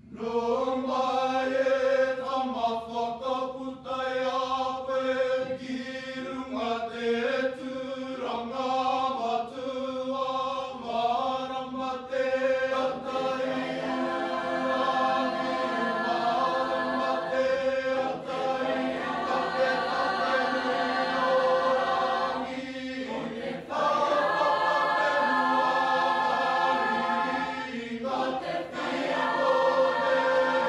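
Mixed choir of teenage voices singing, coming in together at once, with a held low note sounding throughout beneath moving upper parts and a couple of brief breaks in the later half.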